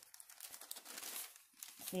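Crinkling and rustling of a thin white sheet being handled and smoothed against a diamond painting canvas, in small irregular crackles.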